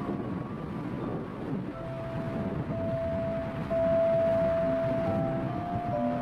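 Background music of soft held notes, one long note sustained through the middle, over a low steady rumble.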